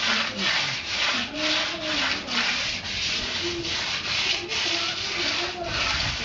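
Rhythmic back-and-forth rubbing of a hand tool on a concrete wall's cement surface, about two strokes a second, each a rasping hiss.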